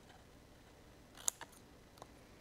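Scissors snipping a small wedge out of cardstock at a score line: one short snip about a second and a quarter in, otherwise quiet.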